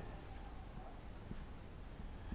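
Felt-tip marker writing a short word on a whiteboard: faint, brief scratchy strokes of the tip on the board.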